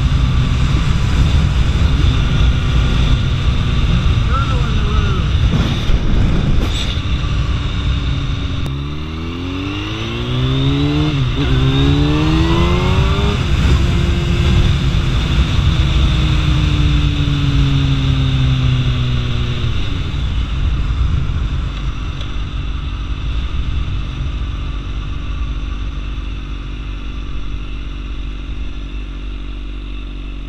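Kawasaki Ninja ZX-10R inline-four through an Akrapovic exhaust, under heavy wind noise. About nine seconds in the engine revs up through two quick upshifts, then holds a steady, slowly falling pitch. After about twenty seconds it eases off as the bike slows.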